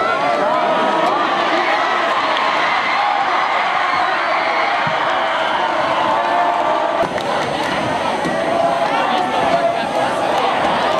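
Football crowd cheering and shouting, many voices overlapping at a steady level as a touchdown is scored, with a sudden break about seven seconds in.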